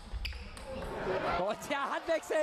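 A table tennis ball clicks sharply off bat or table a moment after the start. From about a second in, a voice calls out in the hall as the point ends.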